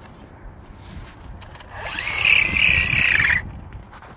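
Traxxas Drag Slash RC truck's brushless motor and drivetrain spun up while the truck is held in place: a whine that rises quickly in pitch, holds high and steady for about a second and a half, then cuts off suddenly.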